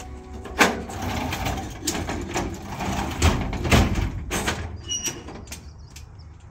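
Stock trailer's metal rear door being swung shut and latched: a run of clanks and rattles, with two heavy thuds a little over three seconds in.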